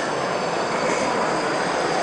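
Steady, even background din of a large, busy exhibition hall.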